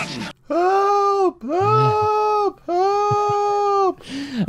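A cartoon character's voice crying "Help!" three times from the cartoon soundtrack. Each cry is long and drawn out, held at a high, steady pitch.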